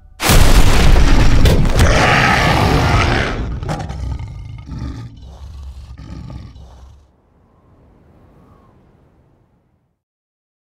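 A loud, deep bear roar from a bear-man creature, a trailer sound effect with a heavy boom. It hits suddenly at the start, holds for about three seconds, then dies away in uneven pulses over the next few seconds.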